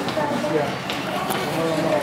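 Several children talking indistinctly over one another in a classroom, at a moderate level, with no single clear voice.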